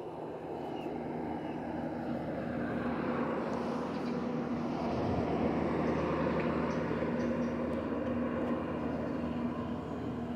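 A steady mechanical drone with a low hum, growing louder over the first few seconds and then holding.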